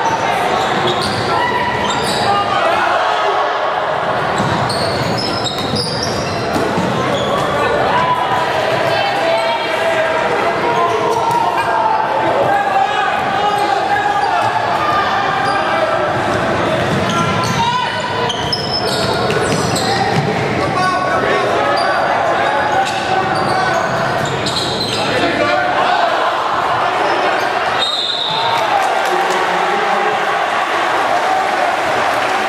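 Sounds of a basketball game in a gym, echoing in the large hall: the ball dribbling on the hardwood court over a steady mix of shouting players and chattering spectators.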